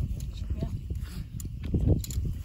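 Muffled voices of people talking, over a constant low rumble of wind on the microphone.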